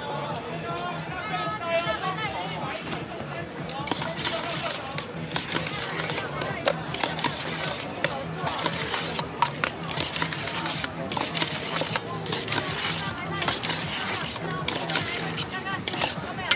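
A metal spoon scraping and clinking against a stainless steel mixing bowl as sliced chicken and vegetables are tossed. The quick, irregular clatter starts a few seconds in, over background voices and music.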